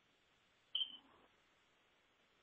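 Near silence, broken by one brief high-pitched blip about three-quarters of a second in.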